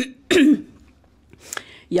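A woman briefly clears her throat once, with a small click about a second and a half in.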